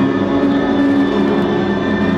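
Live band music with a steady, droning chord held through, between sung lines and with no singing.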